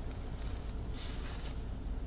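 Steady low rumble of a car's engine and tyres heard inside the cabin while it moves slowly in traffic.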